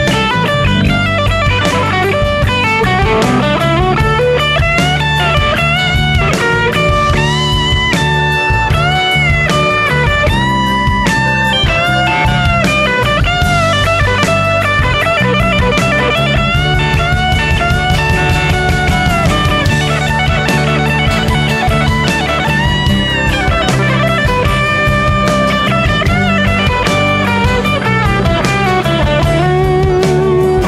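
Live rock band playing an instrumental passage: an electric guitar lead line with bent notes over drums, bass and a strummed acoustic guitar.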